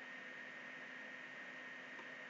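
Faint steady hiss with a thin, steady high tone and a low hum underneath: the background noise of the recording microphone between words, with nothing else happening.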